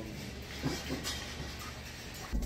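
Big-box store background: a steady low hum with faint, indistinct voices in the distance.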